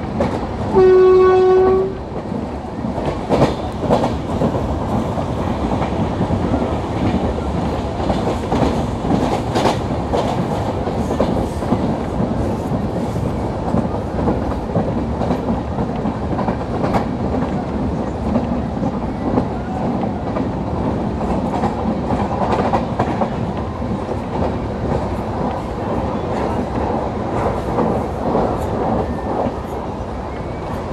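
A WAP4 electric locomotive's horn gives one short blast about a second in. Behind it is the steady running noise of an LHB passenger coach at speed, with its wheels clicking over the rail joints.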